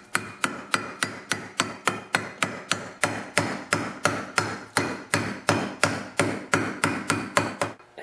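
Hammer tapping a new front wheel bearing into an ATV's steel hub yoke, striking only the bearing's outer race so it goes down evenly. It is a steady run of light metallic taps, about four a second, each ringing briefly.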